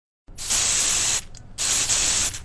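Aerosol spray-paint can hissing in two bursts, with a short break between them, starting about a quarter second in.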